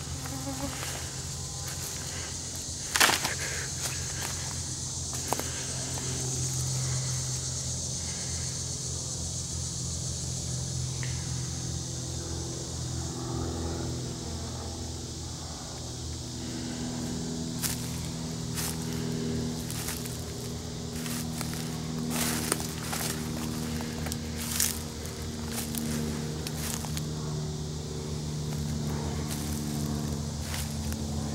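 Summer woodland insects: a steady high-pitched insect drone that fades out about halfway through, and a low buzzing hum, like a fly hovering close by, that wavers slightly in pitch. A few sharp clicks break in now and then.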